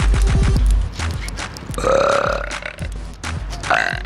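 A woman burping loudly about two seconds in, a long, rough burp, over background music with a heavy bass beat; a shorter vocal sound follows near the end.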